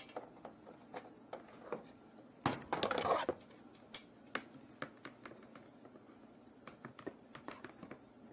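Hard plastic panels of a compost tumbler being handled during assembly: scattered light clicks and knocks, with a louder scraping rustle for under a second about two and a half seconds in.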